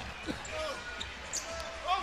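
A basketball being dribbled on a hardwood court during live play, over a low murmur of arena crowd and faint distant voices.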